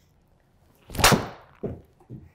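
Titleist TSi3 titanium driver striking a teed golf ball in a simulator bay: one sharp, loud crack about a second in, with a brief ringing tail. A few softer thumps follow over the next second.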